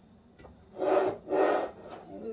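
Two short scraping rustles, about half a second each, a little way in: a hand sliding a handful of dehydrated maraschino cherries over the countertop.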